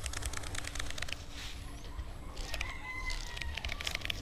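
A rooster crowing: one long, held call starting about two and a half seconds in. In the first second, a rapid run of small clicks from a baitcasting reel winding in line.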